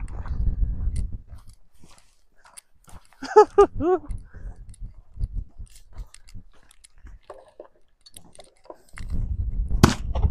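Gusting wind buffeting the microphone at the start and again near the end, with a short laugh about three seconds in. Between the gusts, light crunching steps on rocky dirt, and a sharp click just before the end.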